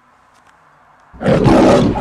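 Quiet for about a second, then a single loud, rough roar like a big cat's, lasting just under a second.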